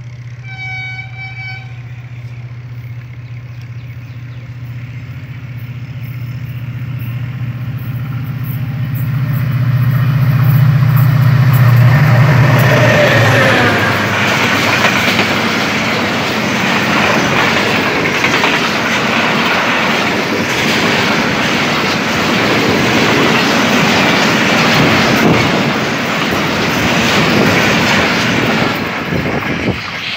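Diesel-hauled express passenger train running through a station at speed. A short horn blast sounds just after the start, and the locomotive's engine hum grows louder as it approaches, dropping in pitch as it passes a little before halfway. Then a long, steady rush and clatter of the coaches' wheels on the rails follows to the end.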